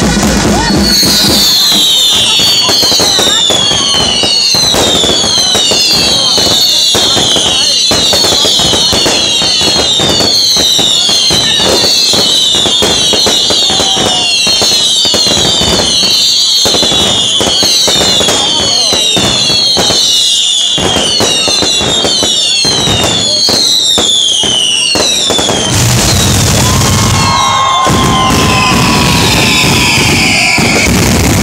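Whistling fireworks going off in quick succession: many overlapping falling whistles, one or two a second, over continuous crackling and banging. A few seconds before the end the run of whistles stops and a different mix of firework noise takes over.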